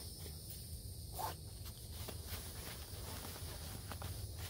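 Steady high insect chirring over a low rumble, with soft rustling and cord sounds from a nylon stuff sack being cinched shut by its drawstring.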